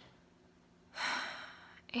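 A woman's sharp intake of breath through the mouth about a second in, fading over most of a second, just before she speaks again.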